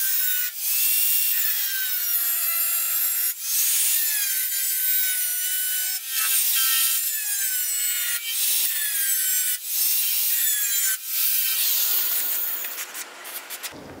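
Angle grinder with a cutoff wheel scoring a shallow channel along a drawn line in a steel car fender: a high, shrill grinding whine with a wavering pitch, dipping briefly several times, then dying away near the end.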